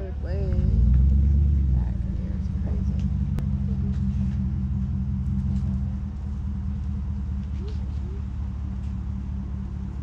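Low, steady rumble of a motor vehicle's engine, swelling about a second in and easing a little around six seconds.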